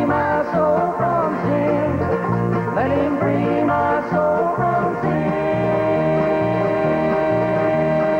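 Bluegrass gospel group singing in harmony to banjo, mandolin, acoustic guitar and bass guitar, with a steady bass line underneath. About halfway through, the voices settle into a long held chord.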